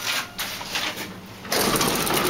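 Schindler elevator car arriving and its doors opening: a few clicks and knocks from the door mechanism. About one and a half seconds in, a sudden, steady rush of lobby noise floods into the car as the doors part.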